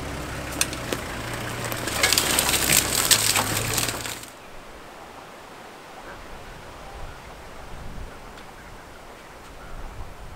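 A safari vehicle's engine idling with a steady low hum, overlaid by a run of sharp crackling and snapping noises about two seconds in. Both stop abruptly about four seconds in, leaving a quiet bush background with a few faint scattered sounds.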